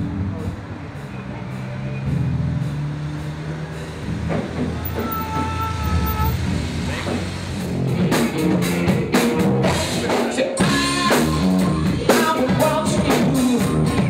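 A low steady rumble, then from about eight seconds in a live rock band playing loudly, with drums keeping a regular beat and bass guitar.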